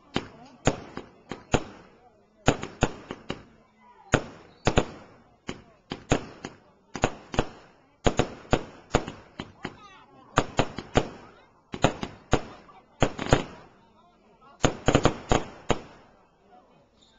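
Aerial fireworks going up and bursting in an irregular string of sharp bangs, often two or three in quick succession, with brief lulls between volleys.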